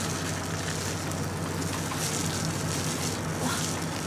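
Pork chops sizzling steadily in a frying pan, over a low steady hum.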